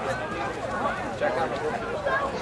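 Indistinct talking of several people at once, overlapping voices with no clear words.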